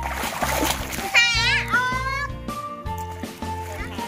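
Children splashing water in a small plastic tub pool over background music with a steady repeating bass line. About a second in, a high voice slides up and then down.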